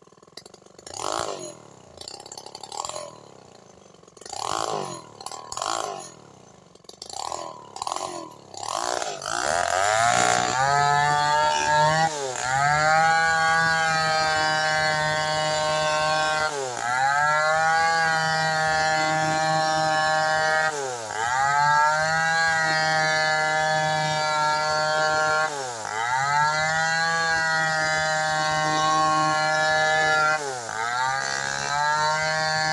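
Stihl 070 chainsaw, a big single-cylinder two-stroke. It gives a string of short, uneven revs, then from about ten seconds in runs steadily at high revs while cutting along a log. Its pitch dips briefly and recovers about every four to five seconds as the chain loads up in the wood.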